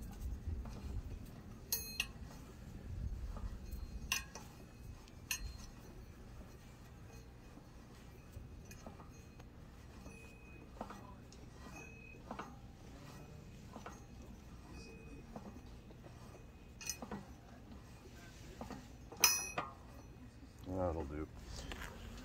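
Scattered sharp steel-on-steel clinks as the English wheel's acme-threaded jack screw is turned down by hand with its tube handle in the steel post. About five clinks stand out, the loudest near the end, with quieter scraping between them.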